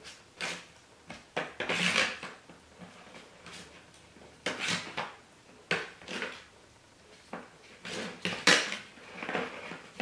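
Metal spoon stirring chunky salsa in an aluminium foil tray: irregular scrapes and clinks of the spoon against the thin foil, with quieter pauses between strokes.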